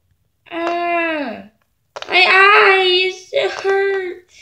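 A young girl's voice in three drawn-out, sing-song phrases without clear words.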